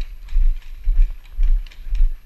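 Footsteps of a player moving quickly on packed dirt, about two strides a second. Each step lands as a heavy thud on the body-worn camera, with paintball gear rattling and clicking on every stride.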